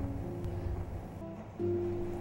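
Acoustic guitar playing held, ringing chords, with a new chord struck about one and a half seconds in.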